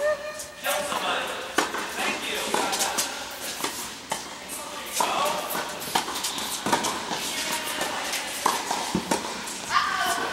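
Tennis balls struck by rackets and bouncing on indoor hard courts, giving irregular sharp pops from several courts at once in a large tennis hall, with players' voices calling out.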